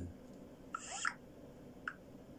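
A faint, short breathy sound about a second in, like a person drawing breath, then a single small click near the end.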